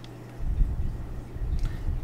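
Uneven low rumble with soft bumps starting about half a second in, from a hand bringing a black marker back down onto card stock on the drawing surface.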